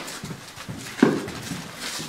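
Footsteps of a few people walking, a few steps a second, with one louder knock about a second in.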